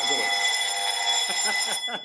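Electric alarm bell ringing continuously, a steady high metallic ring that cuts off shortly before the end.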